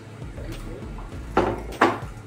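Two sharp clacks of cutlery and dishes at a table, about half a second apart, near the end, over low table chatter.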